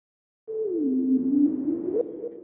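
Synthesized intro sound effect: after a brief silence, a single electronic tone over a hiss starts about half a second in, glides down in pitch, holds, and rises back up near the end.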